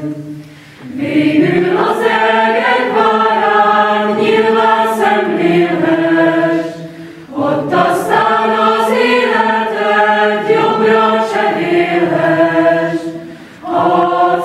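Secondary-school choir singing together in long, held chords, the sound dropping away briefly between phrases about a second in, about halfway through and again just before the end.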